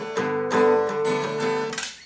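Acoustic guitar in DADF#AD open tuning, a chord strummed and struck again about half a second in, then left to ring and dying away near the end.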